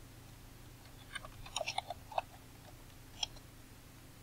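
Computer keyboard typing: a quick run of about ten key taps, then one more tap about a second later, over a faint steady hum.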